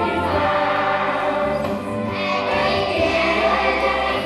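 Children's choir singing in unison, over low sustained backing notes that change every second or so.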